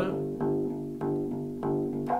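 Four-string electric bass playing its root note G over and over in a steady rhythm, about three plucked notes a second. This is the simplest root-note accompaniment of a G major chord.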